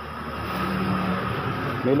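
A low engine hum, steady in pitch, growing gradually louder.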